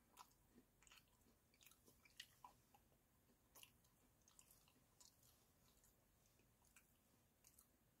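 Faint chewing of crunchy Doritos nacho cheese sandwich crackers with the mouth closed: irregular soft crunches and clicks.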